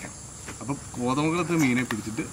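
Steady, high-pitched chirring of insects in the surrounding vegetation, under a man's voice that starts talking about half a second in.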